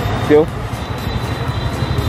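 Steady low rumble of street traffic, with a short spoken syllable just after the start.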